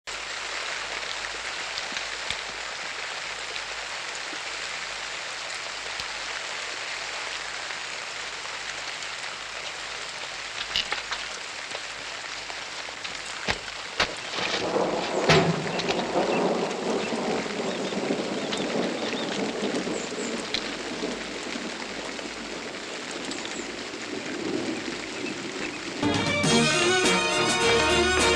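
Steady rain, starting abruptly and growing louder and deeper from about halfway, with a few sharp clicks among it.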